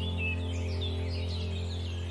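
Many small birds chirping in quick, overlapping short calls over a sustained low music drone.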